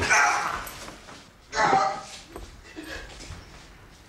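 A man crying out in pain while he is beaten: two loud yelps, the first right at the start and the second about a second and a half later, then quieter whimpers and scuffling.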